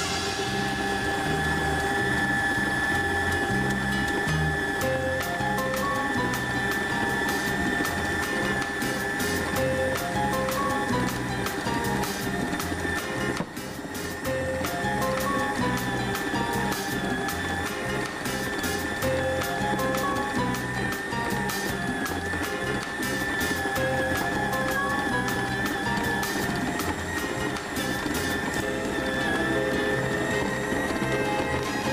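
Stand mixer motor running steadily with a high whine as it kneads bread dough, with background music playing.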